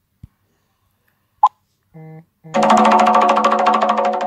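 Smartphone alert sounds: a single short pop about a second and a half in as the WhatsApp message goes out, then a brief tone and, from about halfway, a loud sustained musical chime with a fast tremolo that is still fading at the end.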